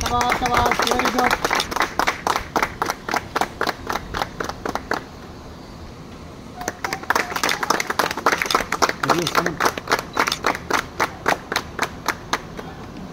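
A small group of people clapping, about five or six claps a second, with a break of over a second near the middle before the clapping starts again. A few voices are heard over it.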